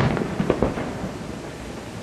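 Aerial firework shells bursting: a sharp bang at the start, a quick cluster of bangs about half a second in, then a fading rumble.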